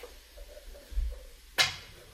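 One sharp click of a pool cue tip striking the cue ball, about three-quarters of the way through.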